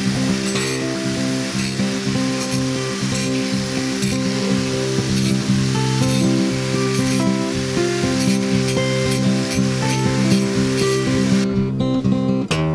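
Angle grinder's abrasive disc grinding rust off a steel knife blade, a steady gritty hiss under background music. The grinding stops shortly before the end while the music carries on.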